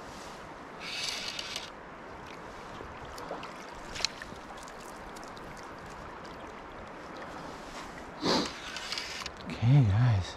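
Steady rush of a shallow, rocky trout stream flowing, with a short noisy burst about a second in. Near the end, a man's short voice sounds, a hum or grunt, are the loudest thing.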